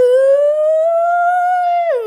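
A woman's voice holding one long sung vowel, unaccompanied, its pitch creeping slowly upward and then sliding down near the end.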